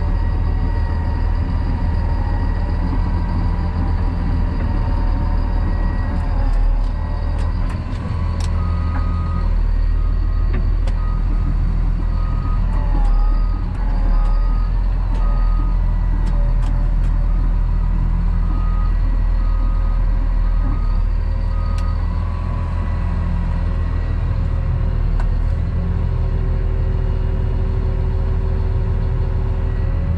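Diesel engine of a CAT D6 crawler dozer running steadily, heard from inside the cab while the machine is driven. From about nine seconds in until about twenty-two seconds, a reversing alarm beeps about once a second over the engine.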